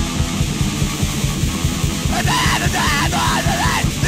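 Fast, loud punk hardcore band playing: distorted guitars and rapid, driving drums. A shouted vocal comes in about halfway through.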